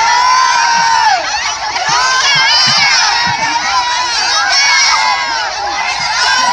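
A large crowd of women shouting, shrieking and cheering together, many high voices overlapping without a break.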